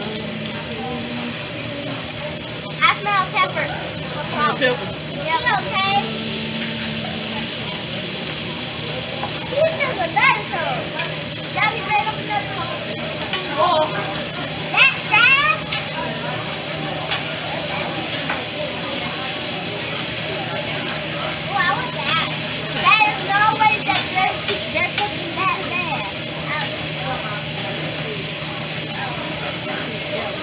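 Meat, seafood and vegetables sizzling on a hibachi steel flat-top griddle, a steady hiss, under bursts of diners' chatter, which are the loudest sounds.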